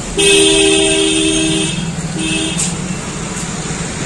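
Vehicle horn honking: one long blast of about a second and a half, then a short toot, over a steady low background hum.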